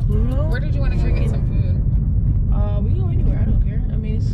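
Steady low rumble of road and engine noise inside a moving car's cabin, with voices talking over it.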